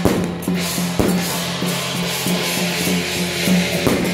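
Taiwanese temple-procession percussion music: drums and cymbals beating over a steady held low tone. Hard strikes fall at the start, about a second in, and near the end.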